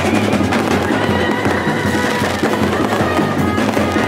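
Aerial fireworks bursting and crackling in quick, irregular succession, mixed with music that carries a held, reedy melody.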